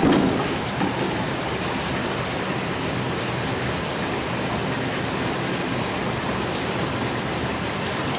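A sudden gush and clunk as water starts pouring from a rocking spout into a small tank, with a second knock just under a second later. Then a steady splashing rush of running water.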